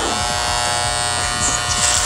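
Two corded electric hair clippers buzzing steadily as they are run through a man's hair.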